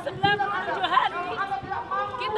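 Speech: a woman addressing a crowd in the open, with chatter from the people around her.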